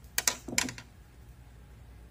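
A few quick light clicks and taps of a hand tool on the sewing machine's metal parts around the feed dogs, in two small clusters in the first second, then quiet.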